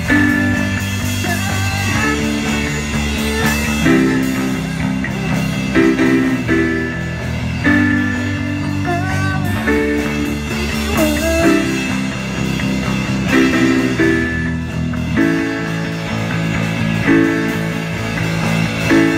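A small rock band playing live, with a drum kit and electric guitar over chords that change about every two seconds, and a guitar line bending up and down in pitch.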